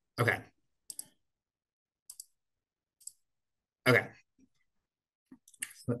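A few faint, sharp clicks at a computer, about a second apart and one of them doubled, with dead silence between them as the slideshow is being worked.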